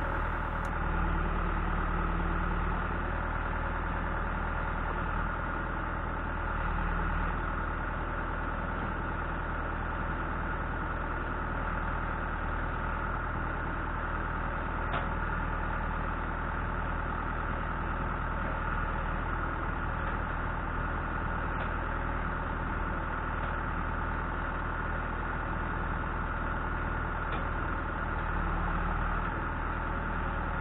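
John Deere 310SG backhoe's diesel engine running steadily at low speed while the backhoe arm and hydraulic thumb are worked, the engine note swelling slightly a few times. A few faint clicks sound in the middle stretch.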